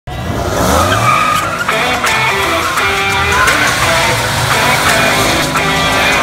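Pickup truck doing a burnout: the engine revs up near the start and is held high while the rear tires spin and squeal on the asphalt, with music mixed over it.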